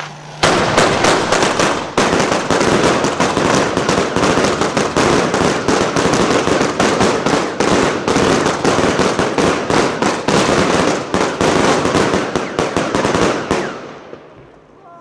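Two Royal Fireworks Silver Willow cakes firing at once: a rapid, unbroken barrage of shots and bursts that starts about half a second in and stops abruptly just before the end.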